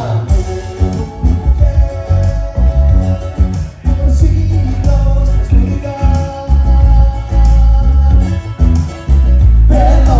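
Live band music with a strong electric bass line and a strummed small acoustic guitar, with sung vocals and held notes.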